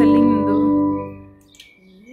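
Organ holding a chord on a registration with a flute stop, then released about a second in and dying away.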